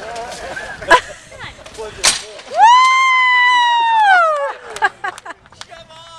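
Two sharp knocks about a second apart, softballs striking at a dunk tank, followed by a loud, long, high-pitched yell from a person, held for about two seconds and falling in pitch at the end.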